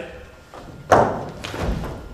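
A single thump on stage about a second in, with a short echo from the hall, followed by a low rumble of movement.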